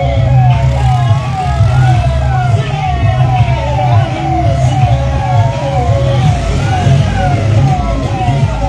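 Siren: a fast falling yelp repeating about twice a second, with a slower wail rising and falling over it, above a steady low rumble.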